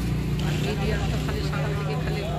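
Indistinct voices over a steady low motor hum, such as an idling engine.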